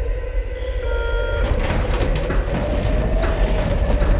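Trailer sound design of a military transport aircraft's hold: a steady low rumble with a held tone above it. The sound grows rougher and louder from about halfway as the rear cargo ramp opens.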